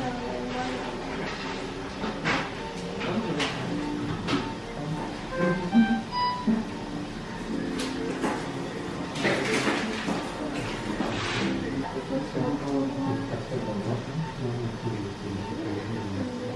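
Background music with held notes, over faint voices and scattered clicks and knocks; a couple of short electronic beeps sound about six seconds in.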